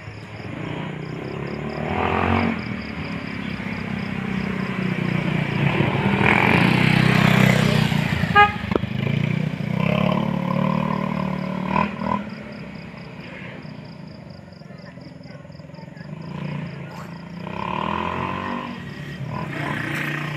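Vehicles passing along a street, swelling and fading several times, the loudest pass about six to eight seconds in, over a steady pulsing chirp of insects.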